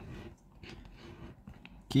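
Faint dry scratching as the coating is scraped off a lottery scratch card, with small scattered ticks, between two short bits of talk.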